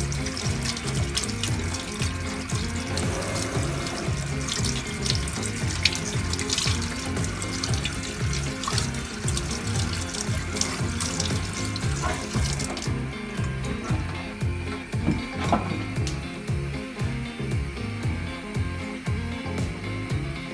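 Kitchen tap running into a stainless steel sink, the stream passing through a small mesh sieve of agar pearls being rinsed. The tap is turned off about two-thirds of the way through. Background music with a steady beat plays throughout.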